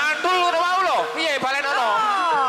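A man's voice calling out loudly, its pitch gliding up and down, with a faint steady held tone behind it.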